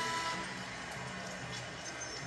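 Arena PA music playing in held, steady notes over a haze of crowd noise.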